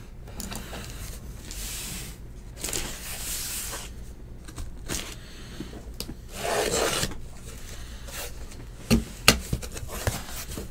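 Cardboard case box being handled and opened: a few drawn-out rubbing and scraping swishes of cardboard against cardboard and the table, with two sharp clicks near the end.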